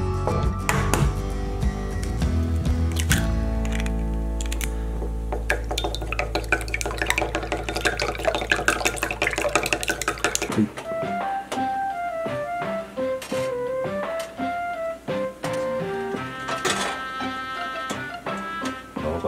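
Background music, with rapid clicking of chopsticks against a ceramic bowl as eggs are beaten. About ten seconds in, the music's low steady chord gives way to a lighter melody.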